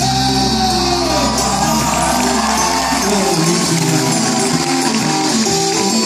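Live band music from acoustic guitar, electric guitar and drums in a hall. Deep held notes carry the first half, then drop out about halfway through, leaving moving guitar lines.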